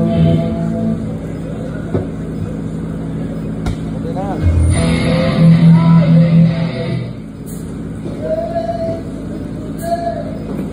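Live rock band playing through the PA, heard from across the room in a bar: electric guitar and bass with a singer. The loudest stretch comes about five to seven seconds in.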